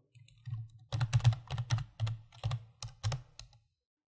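Computer keyboard keys being typed: about a dozen quick, uneven keystrokes in a short burst, over a low hum.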